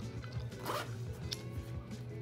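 A zipper on a black fabric pack being pulled open in short scratchy strokes, over faint background music.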